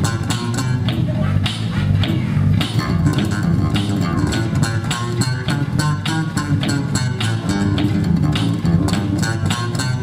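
Two electric bass guitars played together through bass amplifiers in a jam, a dense, continuous run of quickly plucked notes and chords, deep and full in the low end.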